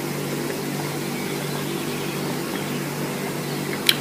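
Steady low machine hum with an even hiss over it.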